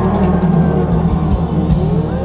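Background music: sustained low bass notes under a gliding melody line.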